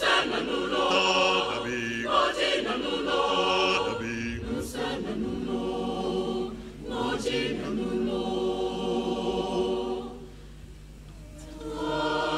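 Mixed choir of men's and women's voices singing in harmony, with sustained chords. The voices break off for a short pause about ten seconds in, then come back in at the end.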